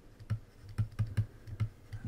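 Stylus tapping and clicking on a writing tablet as a word is handwritten: a quick, irregular run of light clicks, about four or five a second.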